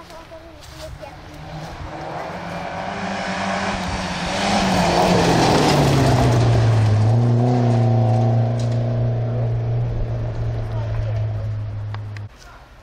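Volvo saloon rally car approaching at speed on a gravel stage, its engine note building and dropping in pitch as it passes about five seconds in. It then holds a steady note as it pulls away.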